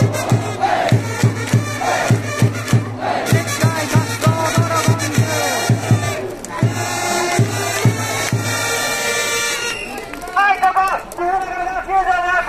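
A baseball cheering section: massed fans chanting a player's cheer song over a bass drum beating steadily about three times a second. The drum stops about nine and a half seconds in, and a cheer leader shouts calls through a megaphone.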